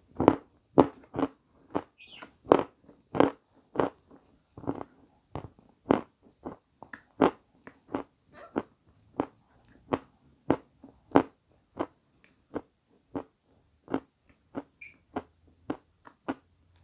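A person chewing a mouthful of pastry close to the microphone, with her mouth closed: a steady run of short, wet chewing smacks, about two a second.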